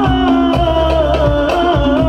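Live sholawat music from a hadrah ensemble: a steady drum rhythm under a long held, gently wavering melody line.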